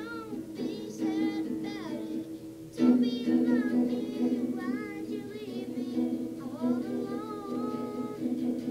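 A boy singing a pop ballad over strummed acoustic guitar chords, with a harder strum about three seconds in.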